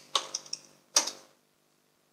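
About five quick clicks of a computer keyboard and mouse as values are typed into software fields, the loudest about a second in.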